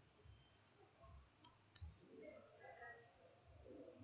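Near silence: faint room tone with two short clicks about one and a half seconds in and faint murmuring in the second half.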